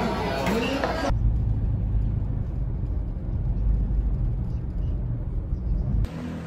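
About a second of voices talking in a restaurant, then a sudden cut to a steady low rumble with almost nothing higher in pitch, like road noise heard from inside a moving car.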